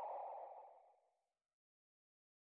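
An outro sound effect, a soft hissing whoosh with no clear pitch, fading away and gone about a second in.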